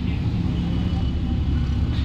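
Steady low hum with room noise from an amplified microphone system, with no voices over it.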